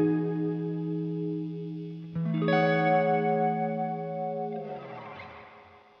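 Collings I-35 LC semi-hollow electric guitar with Lollar humbuckers, played clean through a Dr. Z tube combo amp with reverb. A held chord rings and fades, a second chord is struck about two seconds in and rings, then the strings are damped near the end, leaving a reverb wash that dies away.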